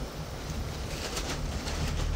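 Wind blowing across the microphone, a steady low rumble with a faint hiss above it.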